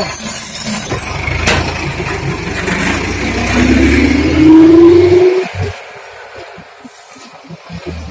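A motor vehicle's engine rumbling, then rising in pitch as it speeds up, loudest about five seconds in, before the sound cuts off abruptly.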